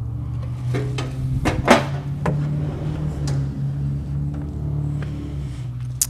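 Pull-out cooktop slide in a travel trailer's outside kitchen being handled: a few short knocks and clicks, the loudest a little under two seconds in, over a steady low hum.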